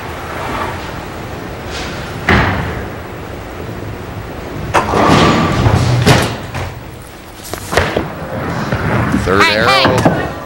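Bowling-alley sounds: a few separate knocks and thuds of bowling balls in a large hall, with a louder stretch of ball noise about five seconds in.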